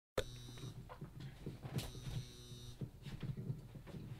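Faint room noise with a steady electrical hum and scattered soft knocks and rustles of someone handling the webcam and moving about. A faint high whine comes and goes twice.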